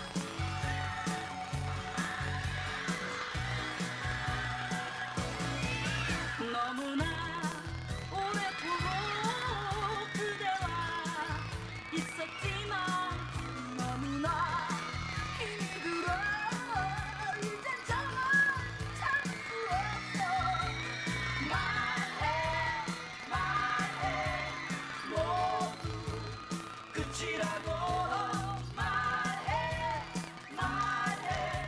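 Late-1980s Korean pop song with a steady dance beat: an instrumental opening, then singing from about six seconds in.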